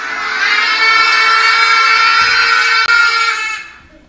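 A group of children shouting together in one long, drawn-out yell, shouting too loud. It swells at the start, holds and dies away near the end.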